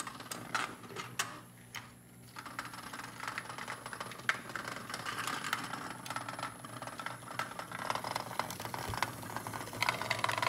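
HEXBUG Nano vibrating robot bugs skittering over the plastic habitat and track, a dense rattling clatter of tiny clicks as they buzz against the plastic. A few separate sharper clicks come first, and the clatter thickens from about two seconds in.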